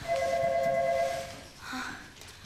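A steady electronic-sounding tone, several pitches held together, lasting about a second and a half before fading out. A short breath-like sound follows near the end.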